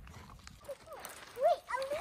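A few short, high-pitched whines, each rising and then falling in pitch, coming in quick succession from a little under a second in, from an animal.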